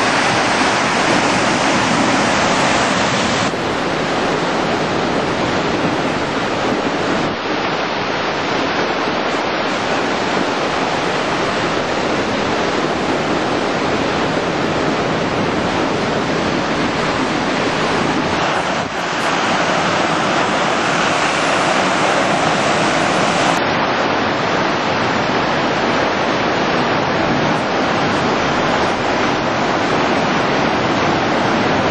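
Loud, steady rush of a large waterfall heard close up in its spray: Vernal Fall on the Merced River.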